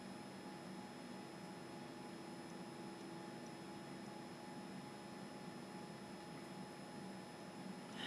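Faint steady room tone: a low hiss with a quiet hum underneath, no distinct sounds.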